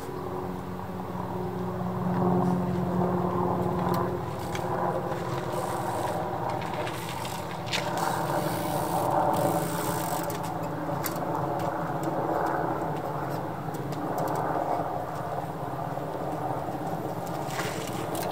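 A steady low engine drone runs throughout. A few sharp clicks and knocks come from a trials bicycle, the last just before the end as it is hopped up onto a concrete obstacle.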